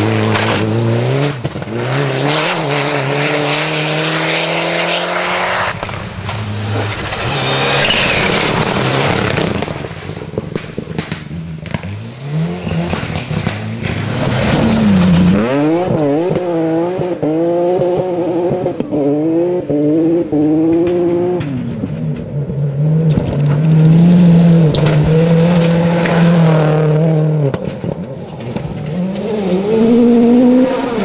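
Several rally cars driven flat out one after another on a loose gravel stage: engines revving high and dropping sharply at each gear change, with tyres scrabbling on the gravel.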